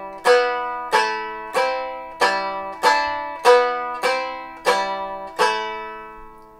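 Six-string Germanic round lyre strummed across the strings with a plectrum in block-and-strum style: left-hand fingers damp some strings so only the chosen notes ring. Nine strummed chords come a little under two a second, the notes shifting from strum to strum, each ringing and decaying; the last one fades out near the end.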